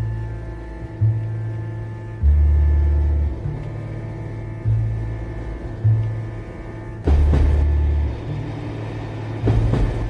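Instrumental background music: deep bass notes changing every second or so under a steady held drone, with two short noisy swells about seven and nine and a half seconds in.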